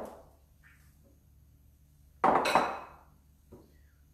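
Crockery being handled on a kitchen benchtop: one loud clatter about two seconds in as a bowl is set down, with a short ring after it and a couple of faint knocks around it.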